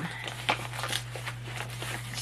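A paper mailing envelope rustling and crinkling as it is handled, with a few soft clicks, the clearest about half a second in. A steady low hum runs underneath.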